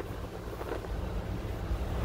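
Steady low rumble of wind buffeting the microphone aboard a moving car ferry, over the ship's engine drone.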